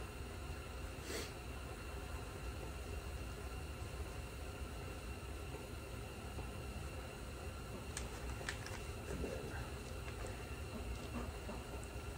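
Faint rustling of a cloth rag handled around a plastic grab handle, over a low steady background noise, with a few light clicks about eight seconds in.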